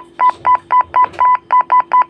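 Motorola GP2000 handheld radio's keypad beeping in a fast, even run of short identical beeps, about six or seven a second, as a key is worked to step through the tone squelch (PL code) values.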